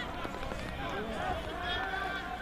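Faint outdoor field ambience at a football game, a steady low background with distant voices calling out.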